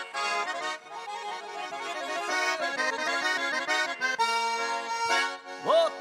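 Russian garmon (button accordion) playing an instrumental introduction: steady chords under a changing melody line.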